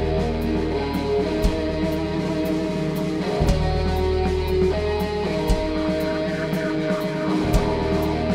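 Live rock band playing an instrumental passage: sustained electric guitar chords over a bass line, with the drum kit keeping time through steady cymbal strokes and a heavy low hit about every two seconds.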